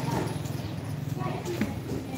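Faint background voices of people talking, over low street and market noise.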